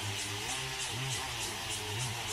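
Propellers of a DJI multirotor crop-spraying drone humming as it holds and adjusts its hover, the motor pitch bending up and down as it corrects its position. A faint, even high ticking runs behind it at about four or five a second.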